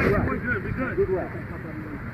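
Indistinct voices of players talking and calling out on a flag football field, over a low steady rumble; the voices thin out after about a second.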